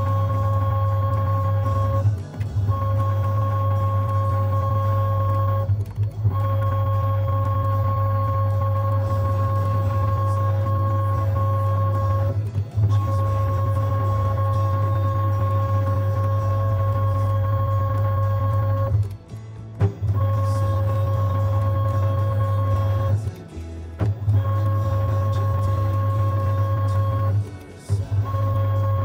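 Huaming SHM-D tap-changer motor drive unit running, a steady electric-motor hum that stops briefly and starts again every three to six seconds as it steps from one tap position to the next.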